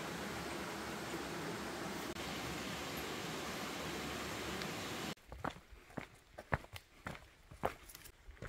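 Steady rush of a nearby stream for about five seconds, cutting off suddenly. Then hikers' footsteps and trekking-pole taps on a dirt forest trail, irregular sharp steps about one to two a second.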